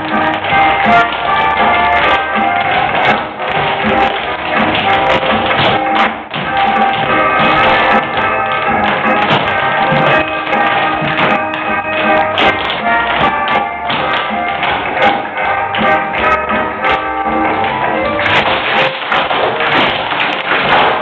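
Several dancers' tap shoes clicking quick rhythms on a stage floor over show music.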